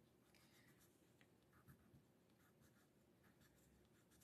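Near silence, with a few faint short scratches of a wax crayon drawing strokes on paper.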